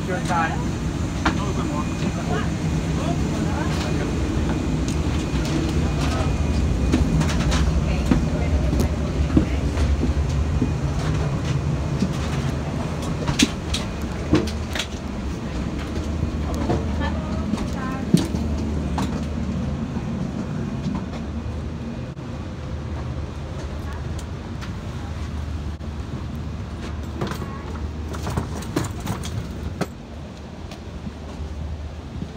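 Steady low rumble of a Boeing 747-8 airliner cabin at the gate, with faint passenger voices in the background and scattered clicks and knocks.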